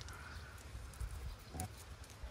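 Dogs moving about at close range on stony ground: a few light clicks and scuffs, and a brief snuffle about one and a half seconds in, over a steady low rumble.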